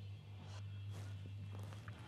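A low steady hum with a few faint knocks, one about half a second in and a couple near the end.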